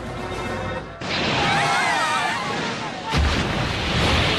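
Cartoon sound effects of a huge creature breaking out of the water. A loud rush of noise starts about a second in, and a heavy, deep booming splash follows about three seconds in, over background music.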